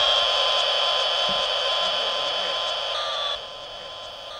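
Sustained synthesized electronic tone over a hiss, sinking slightly in pitch and fading, dropping away about three and a half seconds in.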